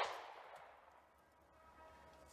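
Tail of a 9mm shot from a Taurus GX4 pistol, fired just before: the report dies away over about half a second, then near silence.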